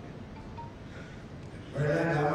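A pause in an amplified speech, filled with a steady hiss of room and PA noise and a faint brief tone about half a second in. The man's voice through the loudspeakers comes back near the end.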